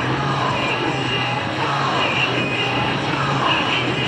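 Four turboprop engines of a C-130 Hercules running as it touches down and rolls out along the runway: a steady low drone with a wavering whine above it that slides down in pitch now and then.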